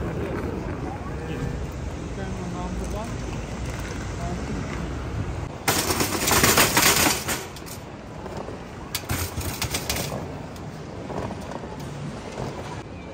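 A metal luggage trolley loaded with suitcases rolls across a hard terminal floor with a low rumble. About six seconds in it clatters loudly for over a second, and a shorter run of quick rattling clicks follows about nine seconds in.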